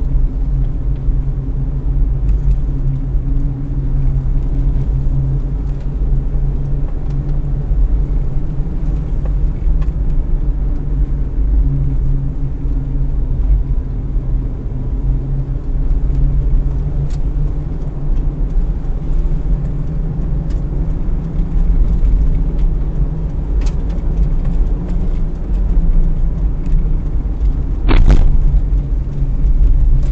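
Toyota Rush driving along a rough rural road, heard from inside the cabin: steady low engine and road rumble, with a few faint ticks and one sharp knock about two seconds before the end.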